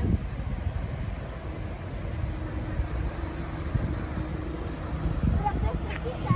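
Wind buffeting the microphone over the steady hum of a boat's engine running, with a few faint voices near the end.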